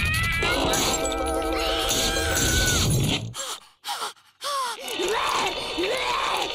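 A cartoon squirrel character's long, drawn-out scream over background music. After a brief drop-out near the middle comes a series of short rising-and-falling cries.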